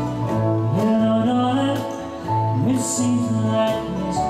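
Small acoustic band playing live: strummed acoustic guitar over a bass line, with hand percussion keeping time and a cymbal washing out near the end.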